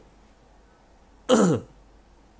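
A man clears his throat once, a short loud sound about a second and a half in, falling in pitch.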